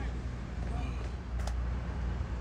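Open-air ambience with a steady low rumble, a faint distant voice and one sharp click about one and a half seconds in.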